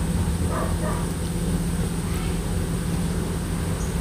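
A steady low hum with an even hiss behind it, and a few faint soft taps.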